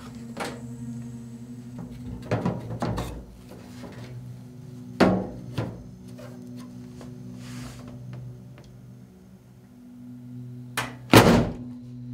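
Dull knocks and thunks as a heavy metal-cased disc magnet and a wooden wedge are handled and shifted on top of a microwave oven, with a cluster of knocks early, a sharper knock near the middle and the loudest thunk near the end as the magnet is set back down on the wedge. A steady low hum runs underneath.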